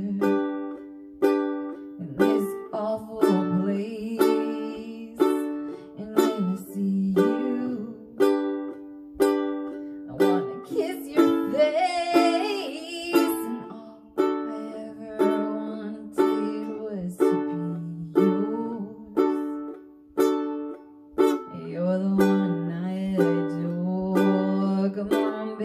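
Ukulele strummed in a steady rhythm of chords, with a woman singing over it in places, most clearly in the middle.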